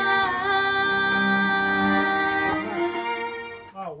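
A string section playing a long bowed chord that shifts about two and a half seconds in and dies away near the end: the closing chord of a take.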